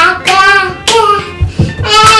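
Girls' voices singing a repetitive hand-play chant, with hand sounds and a few low thuds in the second half from feet on the floor.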